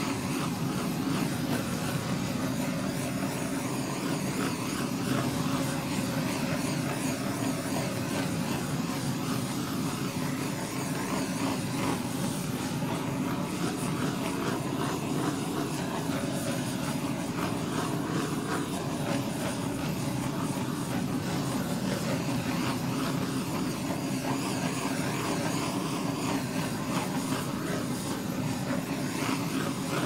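Handheld butane blowtorch flame hissing steadily as it is passed over wet acrylic pour paint, with no breaks.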